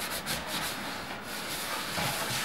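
Sandpaper being rubbed by hand over the pine top of a wooden cabinet, a faint, even rasping.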